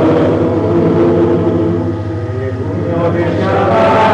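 A congregation of many voices singing together, with held notes. The singing thins briefly around two seconds in and swells again before the end, over a steady low hum.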